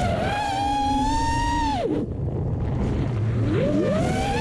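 Brushless motors of an FPV quadcopter (Racerstar 2207 2500kv) whining. The pitch rises quickly as the throttle goes up, holds high for about a second and a half, drops sharply, then climbs again near the end, over a rush of air and prop wash.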